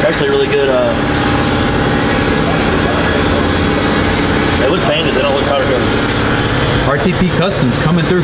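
A vehicle engine running steadily, with indistinct voices talking over it at times.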